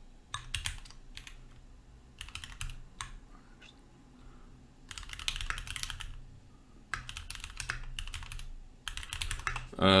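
Typing on a computer keyboard in several short bursts of key clicks with pauses between them, as a terminal command is keyed in.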